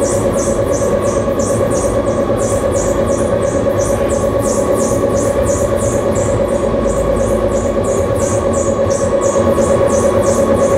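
Harsh-noise electronics from an effects-pedal and mixer rig, played loud through the PA. A steady droning tone runs under a high hissing pulse that repeats about three times a second.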